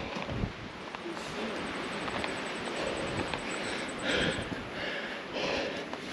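Steady hiss of light rain on a mountain trail, with a hiker's hard breathing coming in quick, regular puffs from about four seconds in.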